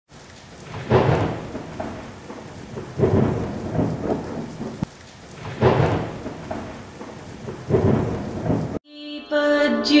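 Rain with four rolls of thunder about two seconds apart, each starting sharply and dying away. It cuts off suddenly near the end as music begins.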